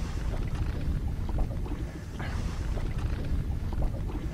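Low, uneven rumble of wind buffeting the microphone in an open boat, with no clear pitched sound.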